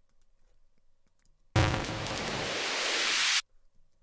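A layered house-music riser effect played back from a DAW: a reversed, chopped white-noise riser stacked with a riser hit. It comes in suddenly with a low hit about a second and a half in, swells louder and brighter as a hiss for about two seconds, then cuts off sharply.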